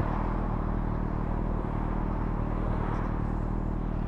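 A motorcycle engine idling steadily, with the rush of traffic passing on a busy road.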